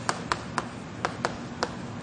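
Chalk tapping sharply on a blackboard, about five quick taps spread irregularly over two seconds as tick marks are struck along a drawn axis.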